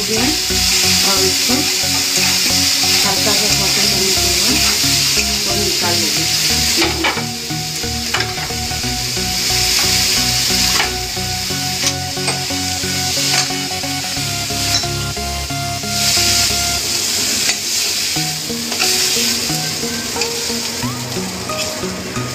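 Marinated soya chunks sizzling as they fry in oil in an aluminium kadhai, stirred with a metal spatula that clicks against the pan now and then.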